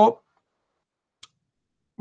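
Silence with one faint, short click about a second and a quarter in, after a man's voice trails off at the very start.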